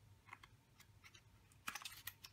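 Faint clicks and light scrapes of a brush and its cardboard sleeve being handled, with a short cluster of louder clicks near the end.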